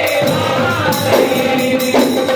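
Ghumat aarti: a group of young men singing a devotional aarti in chorus over ghumat clay-pot drums and a small drum, played in a fast, even beat.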